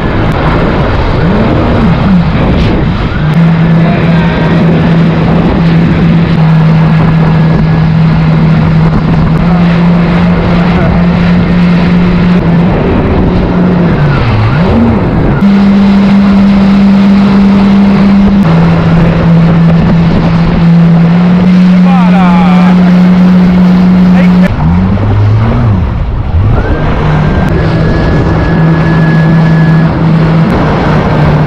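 Yamaha jet ski engine running at speed, a loud steady drone whose pitch steps up and down several times as the throttle changes, with a quick dip and rise about halfway through and again near the end. Over a rush of wind and water spray.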